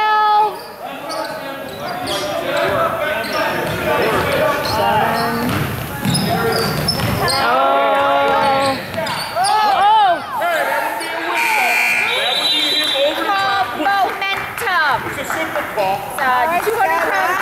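Basketball game in a gym: the ball bouncing on the hardwood floor, sneaker squeaks and spectators' voices echoing in the hall. About eleven and a half seconds in, the scoreboard buzzer sounds briefly as the game clock runs out.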